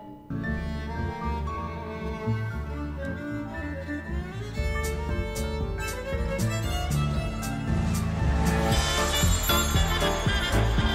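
Soundtrack music led by a violin over a bowed double bass, growing louder and fuller near the end.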